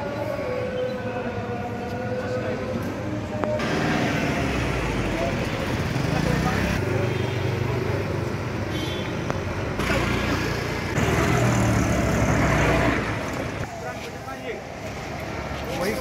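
Busy street noise with motorbikes and traffic passing and indistinct voices. The sound shifts abruptly several times.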